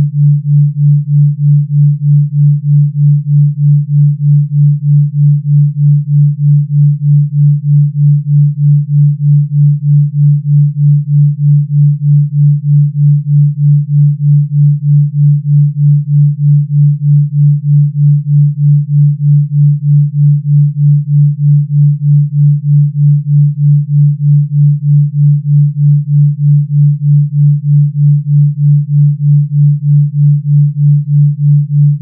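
Pure low sine tone, steady in pitch, pulsing in loudness about three times a second: a 3.2 Hz delta binaural beat.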